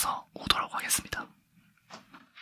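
Close-miked whispered speech with a few sharp clicks mixed in, falling quiet a little past halfway.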